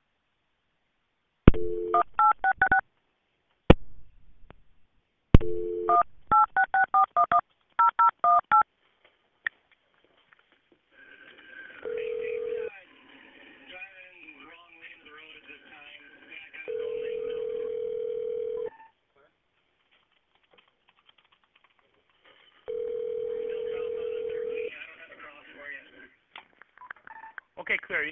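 A telephone line placing a call. About a second and a half in there is a dial tone, then a quick string of touch-tone digits, a click, a second dial tone and a longer string of touch-tone digits. The ringback tone follows, ringing for about two seconds every six seconds, with faint voices behind it.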